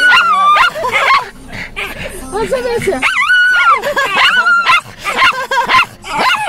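A Bichon Frise dog vocalizing in a run of high, wavering, drawn-out calls and yips.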